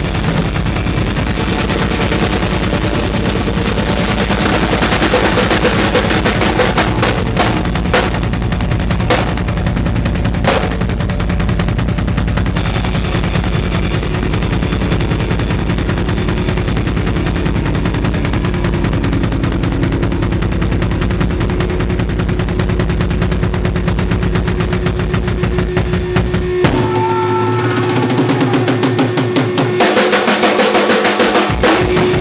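Live heavy rock band with the drum kit to the fore: a fast, unbroken run of bass drum strokes with snare under electric guitar. The low drum strokes stop near the end, leaving held guitar notes ringing.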